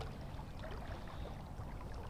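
Faint, steady sound of a river flowing, with a low rumble underneath.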